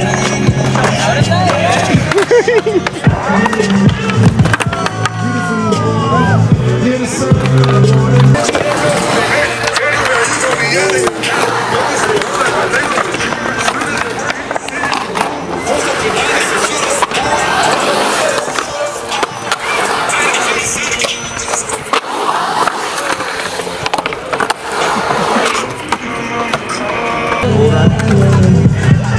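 Music playing, with skateboard wheels rolling on concrete and the knocks of the board under it.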